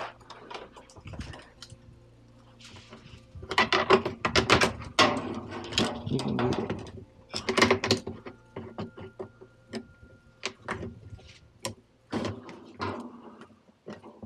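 Metal hand tools clinking and clattering as they are picked from a tool chest drawer, then slip-joint pliers working a spring hose clamp off a washer hose. A steady low hum runs underneath.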